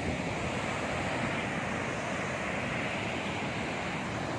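Steady rushing roar of a large waterfall, with wind on the microphone.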